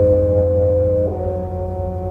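Opera orchestra playing sustained low chords: held notes over a deep bass, with the harmony shifting about a second in.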